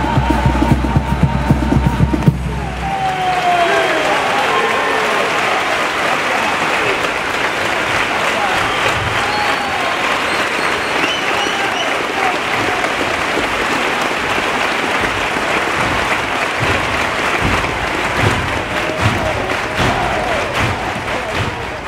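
A carnival comparsa chorus with drums finishes its last sung note about two seconds in, and the audience breaks into sustained applause and cheering, with a few shouts.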